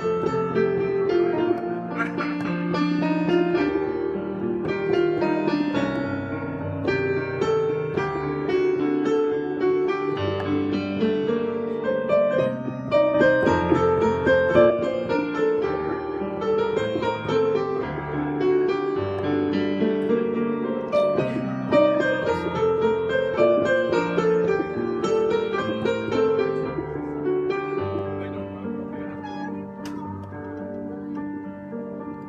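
Digital piano being played, a continuous run of melody over low bass notes, growing somewhat softer near the end.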